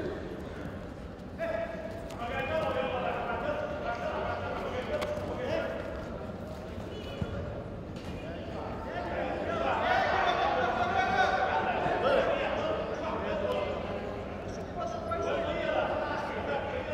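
Coaches and onlookers shouting in a reverberant sports hall, the voices swelling about ten seconds in, with a few dull thuds of bodies and feet on the judo tatami.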